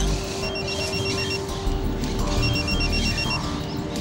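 A phone ringing with an electronic ringtone: two bursts of a rapid trilling ring, each about a second long, with an incoming call.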